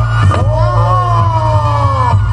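Reog gamelan music, loud: a slompret (Reog shawm) holds one long reedy note that swoops up about half a second in and then slowly sags in pitch, over a steady low drone from the ensemble.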